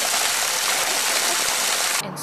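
Water pouring steadily from a pipe onto a concrete slab, a constant splashing rush, as boiled nettle bark fibre is rinsed under it.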